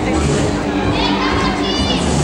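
Tango music playing over a hall's sound system, with children's high voices and crowd chatter over it, echoing in a large hall.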